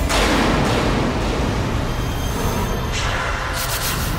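A dramatic sound-effect hit, a sudden boom at the start that fades away over a couple of seconds, then another rush of noise near the end, laid over background music. It marks a bicycle knocking a man down.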